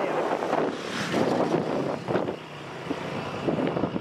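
Motorcycle engine running, mixed with wind rushing over the microphone.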